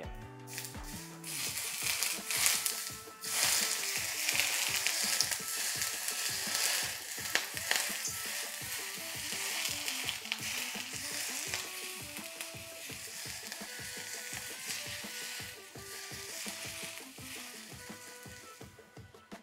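Smoking-hot vegetable oil poured from a saucepan onto shredded scallion and ginger on a plate of steamed fish, sizzling. The sizzle starts about a second in, is strongest over the next few seconds, then slowly dies down as the pour goes on. Soft background music plays under it.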